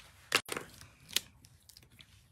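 Paper and card being handled on a craft mat: light rustling with two sharp clicks, about a third of a second in and again just past a second.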